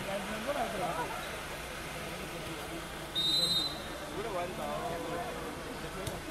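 A referee's whistle blows once, a short high steady blast of about half a second some three seconds in, over faint crowd chatter around the volleyball court.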